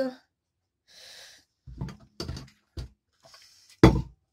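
Brief breathy sounds and small handling noises, then one sharp knock just before the end, the loudest sound.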